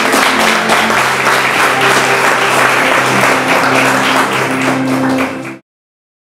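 Applause and clapping over background music with sustained low notes; it all cuts off suddenly near the end.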